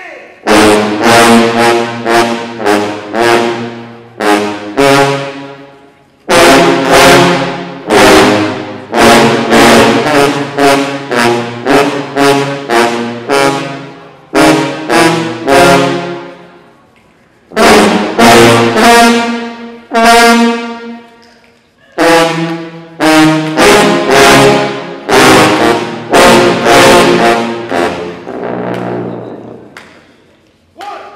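Sousaphone ensemble playing loud, punchy brass chords in short accented notes, grouped into phrases with brief pauses between them, the notes ringing on in the hall after each stop.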